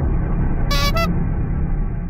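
Inserted comedy sound effect: a steady low rumble of car traffic with two short car-horn toots about three quarters of a second in, the second a little higher than the first.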